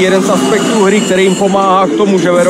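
A television commentator speaking without a break over a steady roar of arena crowd noise.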